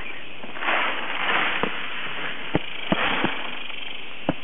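Channel catfish feeding on floating fish food at the pond surface: four short sharp pops as pellets are taken, with two bursts of splashing.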